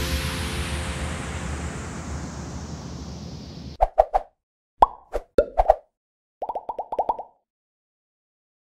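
The final chord of electronic background music dies away over the first few seconds. Then come short pop sound effects from an animated outro: three quick pops, a few more about a second later, some gliding up, and a rapid run of pops near the end.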